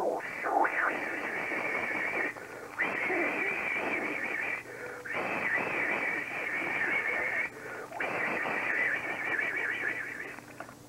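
A person blowing hard into the microphone, made as a sound effect for clearing a stench from the air: four long hissing blows of about two seconds each, with short breaks between them.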